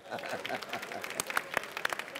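Audience applause: a dense run of many hand claps, with no speech over it.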